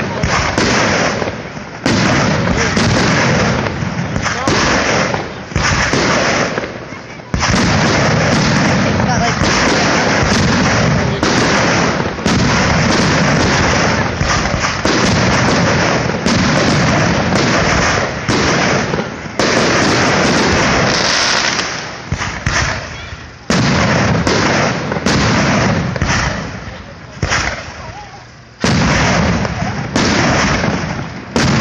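Aerial fireworks shells bursting one after another, loud and nearly continuous, with fresh sharp bursts about two, seven, twelve, nineteen and twenty-nine seconds in, each trailing off.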